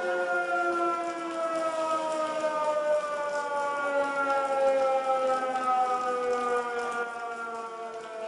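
Air-raid siren sounding one long wailing tone that cuts in suddenly and slowly falls in pitch throughout.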